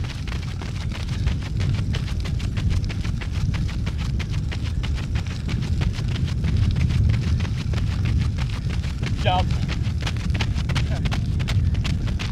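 Several runners' footsteps crunching quickly on a gravel path, with their breathing, over a steady low rumble. A short wavering call or voice cuts in briefly about nine seconds in.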